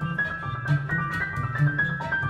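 Live acoustic ensemble of violin, grand piano and plucked double bass playing a fast country-style fiddle tune, the violin holding high notes over piano chords and a steady bass beat.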